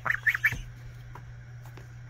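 Goslings peeping: three quick, rising, high-pitched peeps in the first half-second, then only a low steady hum.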